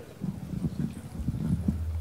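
Irregular soft, low thumps and knocks picked up by a microphone as someone gets set to speak into it, over a steady low hum.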